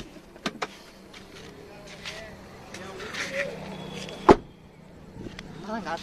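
Two sharp clicks about half a second in, then a single loud slam a little past four seconds, the loudest sound: a car door being opened and shut as someone gets out of the car.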